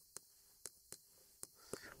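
Chalk writing on a blackboard: a few faint, scattered taps and scratches.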